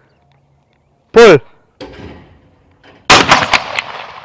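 A loud shouted call about a second in, then a single over-and-under shotgun shot about three seconds in, its report echoing and fading away.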